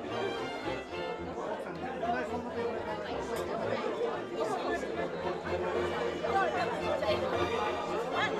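Many people talking at once, a steady hubbub of overlapping voices, with background music underneath.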